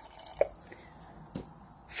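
Quiet room tone with two faint short clicks, one about half a second in and another near one and a half seconds, as a bottle of thick acrylic paint is handled.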